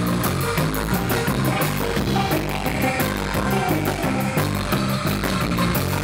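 Surf rock band playing: electric guitar and electric bass over a drum kit, with a bass line stepping through short notes under evenly repeating cymbal strokes.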